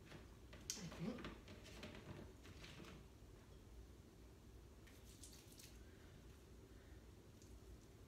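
Faint sticky crackling and squishing of molasses candy mixture being squeezed into patties by hand and pressed onto a metal baking sheet, in a few short bursts over the first three seconds and again about five seconds in.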